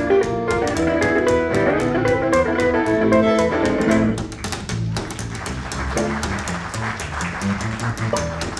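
A western swing trio plays an up-tempo tune: fiddle melody over archtop guitar chords and plucked upright bass, with an even, chopping beat. About halfway through, the fiddle's held notes stop and the music drops a little in level, leaving the guitar and bass rhythm.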